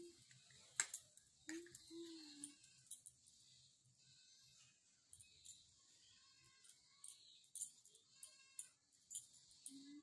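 Faint, short cooing sounds from an infant, a couple of brief wavering vocalisations about one and a half to two and a half seconds in and again near the end, with scattered small clicks.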